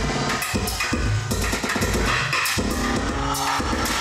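Live electronic music: dense, irregular percussive hits over heavy low bass pulses, with pitched synthesizer tones.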